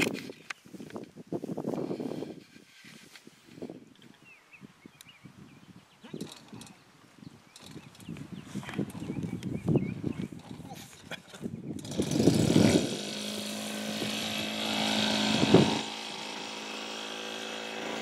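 A model aircraft's small petrol engine starts about two-thirds of the way in and then runs steadily at a fast idle, rising briefly in speed before settling back.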